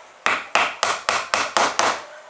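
Seven quick, even taps, about four a second, as a small MDF wheel is driven onto the end of a wooden axle, wood knocking on wood.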